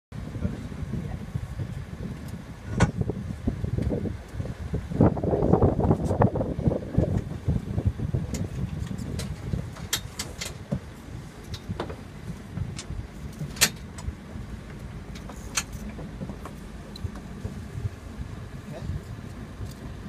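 Sounds aboard a sailing yacht under way: a steady low rumble, with scattered sharp clicks and knocks from deck hardware as the crew works the lines. Indistinct voices come in around five to seven seconds in.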